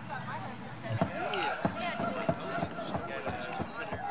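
People talking, with a run of dull thuds or knocks about every half second from a second in.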